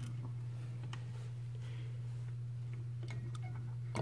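A steady low hum with a few faint, scattered clicks and taps, like a phone being handled and small toy pieces being touched.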